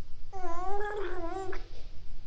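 A baby's single wavering, drawn-out whine of a little over a second, made with a feeding bottle at her mouth.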